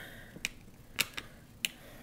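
About four short, sharp clicks in two seconds, the loudest about a second in, from a plastic paracord buckle and binder clip being handled while the cord length is adjusted.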